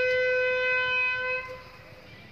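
Bugle call: a single long held note that fades out about a second and a half in.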